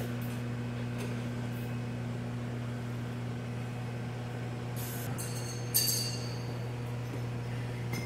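Steady low electrical hum from running equipment, with a few brief clicks and a short rustle about five to six seconds in.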